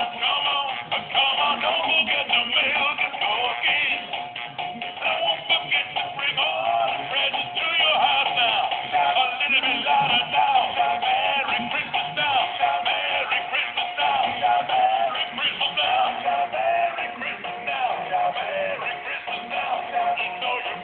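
Animated plush Christmas dog toy singing a song with music, without a break.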